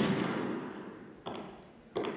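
Music cutting off and dying away in the hall's echo, then two footsteps of heeled boots striking a wooden stage floor, each knock ringing briefly in the hall.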